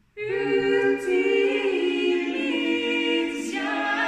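Three men and a woman singing a cappella in close harmony, a traditional Swedish song. The voices come in together a fraction of a second in, out of silence, and hold long sustained notes.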